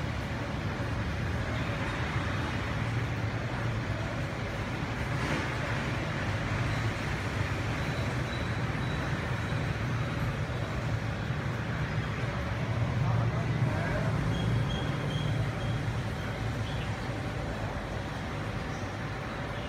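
Steady street traffic noise: a continuous low rumble of passing motor vehicles, with voices mixed in.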